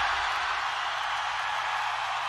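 Large concert crowd cheering and applauding, a steady wash of noise without music.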